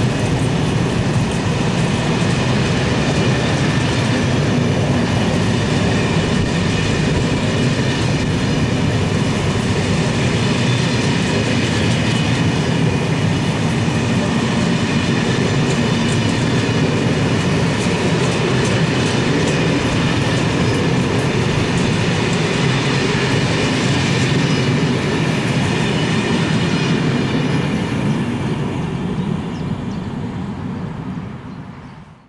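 A rake of SNCF Corail Intercités passenger coaches rolling past at speed: steady wheel-on-rail noise that fades away near the end as the last coach goes by.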